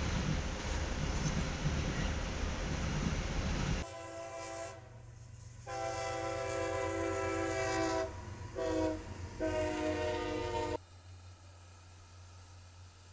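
Freight train passing with a steady rumble of cars on the rails. About four seconds in, a diesel locomotive's multi-note air horn sounds four blasts in the grade-crossing pattern (long, long, short, long), which cut off abruptly near the end.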